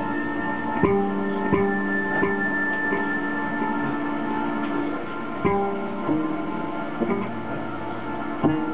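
Hurdy-gurdy playing sustained drone tones in a slow, repetitive minimal pattern. New notes come in with sharp attacks: three in quick succession about a second in, then a few more spaced out over the last three seconds, each left ringing over the drone.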